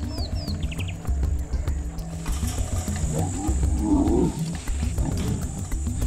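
A lion giving one low, wavering call about three seconds in, over documentary background music with a pulsing bass.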